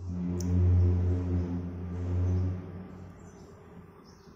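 A low, steady-pitched drone, loudest about a second in and again just after two seconds, fading out before three seconds, with one short sharp click near the start.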